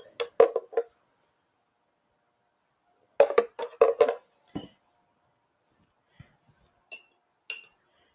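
Light clinks and knocks of a glass and a metal spoon being handled on a countertop, in two short clusters about three seconds apart. Two faint ringing taps near the end come from a spoon going into a ceramic cup.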